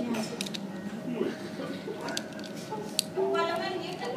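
Indistinct voices talking in the background, with a few sharp clicks of plastic Lego pieces being handled.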